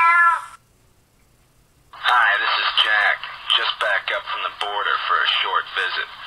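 A meow ending just after the start, a pause of near silence, then a voice speaking a recorded answering-machine greeting from about two seconds in.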